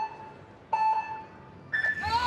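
Electronic start signal of a speed climbing race: a lower beep about two-thirds of a second in, then a higher-pitched beep near the end that sets the climbers off.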